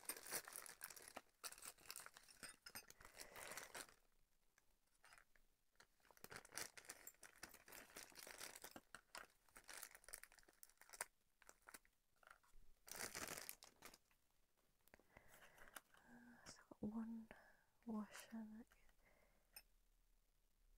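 Thin plastic bag crinkling and rustling in the hands in several soft bursts as the cake stand's hardware is unwrapped from it.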